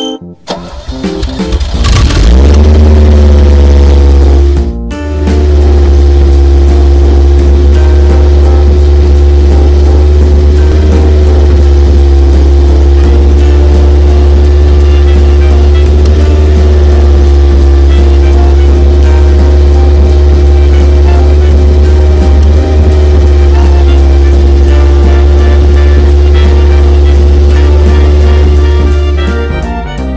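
Animated monster dump trucks' engine sound effect: a heavy, steady low engine drone with a held hum, rising in about two seconds in, dropping out briefly near five seconds, then running on evenly.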